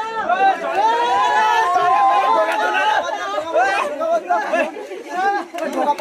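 A group of people talking and calling over one another: loud, overlapping chatter with no words standing out clearly.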